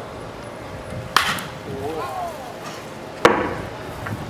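Two sharp smacks of a baseball about two seconds apart in live batting practice, the second one louder, with a short shouted call between them.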